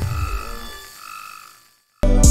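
Electronic logo-intro sound effect: a low thump, then warbling, bending synth tones that fade out near the end.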